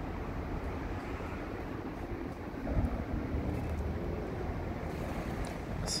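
Steady rumble of traffic on a main road, with one vehicle's engine note faintly standing out around the middle.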